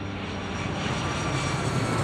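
Airplane flying overhead: a steady rushing engine noise that grows louder.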